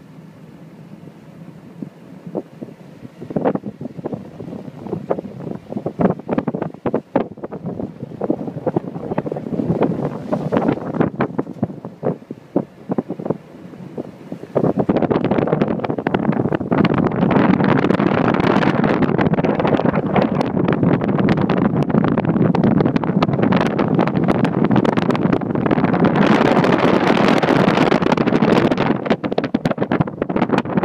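Wind buffeting the microphone in gusts, then about halfway through turning suddenly louder and constant.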